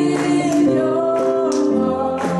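A woman singing a slow worship song in long held notes, accompanying herself on a Roland FP-80 digital piano.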